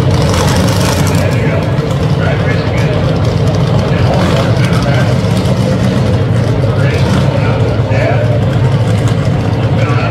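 Dragster engines idling, a loud, steady low rumble with a brief rise in the highs about half a second in.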